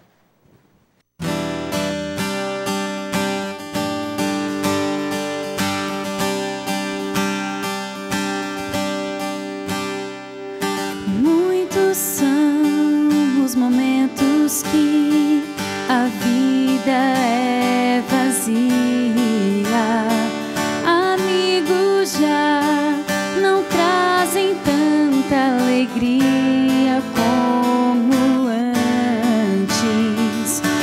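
Acoustic guitar begins playing after about a second, strumming and picking a slow intro; about ten seconds in, a woman starts singing a slow song over the guitar.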